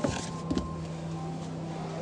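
Carpeted boot floor board of a Toyota Vios being lowered back over the spare wheel: a click as it is handled, then a soft knock about half a second in as it settles, over a steady low hum.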